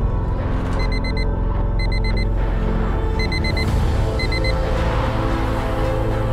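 Dark, brooding film score with a steady low drone, over which a digital alarm clock beeps in several quick bursts of four short high beeps.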